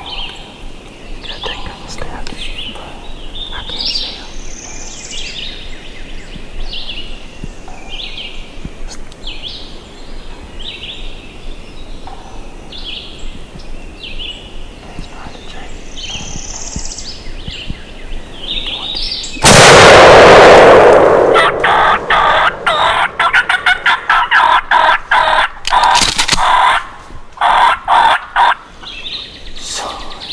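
Small birds chirping repeatedly in the woods, then a single very loud shotgun shot about two-thirds of the way through that rings out and fades. After it comes several seconds of rapid clattering pulses.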